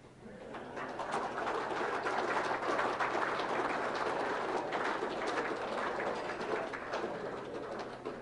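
Audience applauding, building up quickly after the start and tapering off toward the end.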